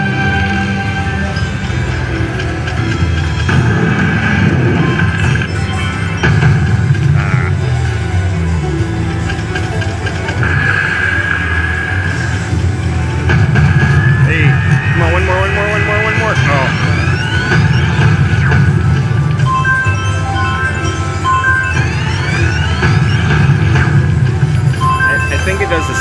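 Ainsworth Ultimate Fortune Firestorm slot machine playing its electronic game music and spin sounds over the steady noise of a casino floor. Rising sweeping effects sound about halfway through and again near the end, as Firestorm symbols land and the respin feature starts.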